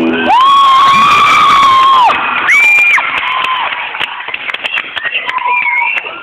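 Young audience screaming and cheering at the end of a rock band's song. A last electric guitar chord stops just after the start, then come a long high-pitched scream and two shorter ones, and scattered clapping and cheering fill the second half. The recording is thin and tinny from a phone microphone.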